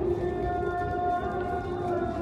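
Asr call to prayer (adhan) chanted by a muezzin over the mosque's loudspeakers, the voice held on one long note that wavers slightly in pitch.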